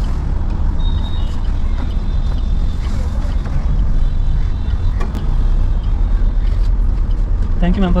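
Steady low rumble inside a stationary car's cabin: the car idling, with street traffic outside, and a few faint clicks about five seconds in. A voice starts near the end.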